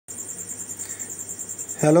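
A steady, high-pitched trill pulsing about a dozen times a second, like an insect calling. A man's voice cuts in near the end.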